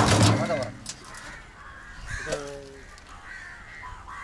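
Crows cawing repeatedly in the background, with a short loud burst of noise in the first moment.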